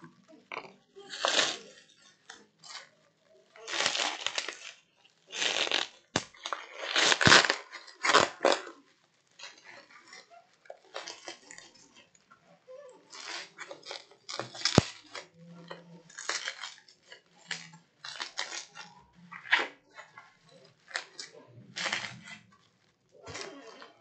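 Bubble wrap and plastic bags being handled and pulled open by hand, crinkling and rustling in irregular bursts, with a few sharp clicks in between.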